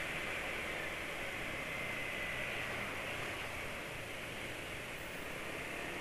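Steady, even ride noise of a Yamaha scooter under way, with wind and engine blended into one hiss, and a faint high whine that slides slightly lower early on.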